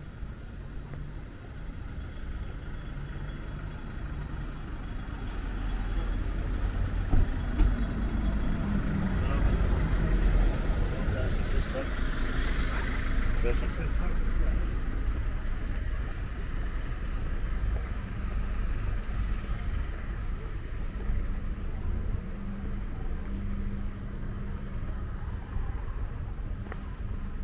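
Street traffic ambience: a car passes, swelling and fading through the middle, over a steady low rumble, with people's voices in the background.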